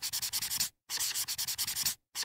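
A marker writing on a whiteboard, scratching in quick strokes. It comes in two runs with a short break a little under a second in.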